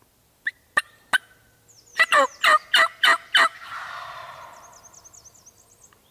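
Wild turkey gobbler gobbling loudly: a rapid rattling run of about six notes that rings on through the woods for a couple of seconds after it. Three short sharp notes come just before it, within the first second or so.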